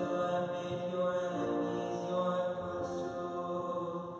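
Liturgical chant sung in long, held notes that change pitch slowly, one note gliding into the next.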